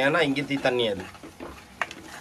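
Chopped onions and tomatoes sizzling in a clay pot as they are stirred with a spatula, with a single sharp click near the end.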